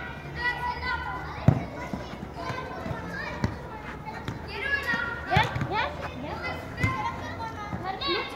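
Children shouting and calling out during a football game, with several sharp thuds of the ball being struck, the loudest about a second and a half in.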